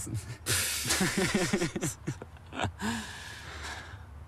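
People laughing: a breathy burst of laughter starting about half a second in and dying away over about a second and a half, followed by a short voiced sound near the three-second mark.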